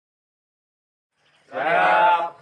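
Silence for about the first second and a half, then young men's voices shouting a long, drawn-out greeting together.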